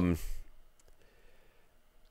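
A man's drawn-out hesitant "um" trailing off at the start, then a pause with only a few faint clicks.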